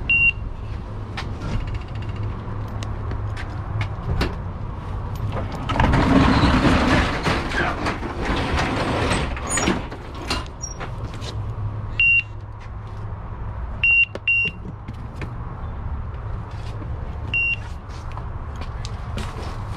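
Short high-pitched beeps from a handheld package scanner, five in all: one at the start, three close together past the middle and one near the end. Under them a steady low hum from the delivery truck, with a few seconds of louder scraping and knocking of cardboard boxes being shifted in the cargo area about six seconds in.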